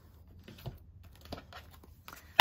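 A few faint, light taps and clicks of card decks being picked up and handled on a tabletop.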